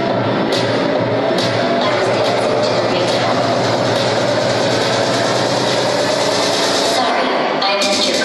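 Loud disco dance competition music playing through the hall's speakers, with audience voices cheering over it; the music carries no deep bass here, and the top end briefly thins out shortly before the end.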